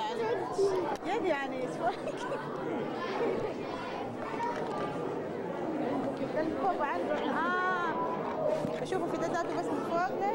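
Many people talking at once: indistinct overlapping chatter with no single clear speaker, with one louder voice standing out briefly about three-quarters of the way through.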